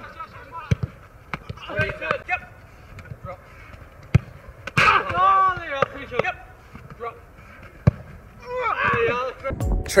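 Footballs being kicked hard in shooting practice: several sharp thuds a few seconds apart, with distant shouts from players between them.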